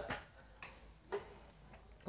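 Quiet room with two short, soft clicks about half a second apart, and a fainter one near the end.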